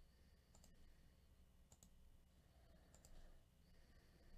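Near silence with three faint computer mouse clicks, about a second apart, over a faint low hum.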